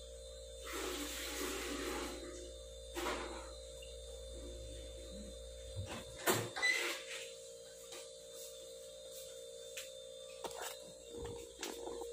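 Steady electrical hum in a small room, with a rustle about a second in and scattered clicks and knocks; a deeper hum cuts off about halfway through, around a sharp knock.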